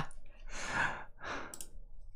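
A man breathing out hard in two breathy, sigh-like puffs while laughing, the first longer than the second.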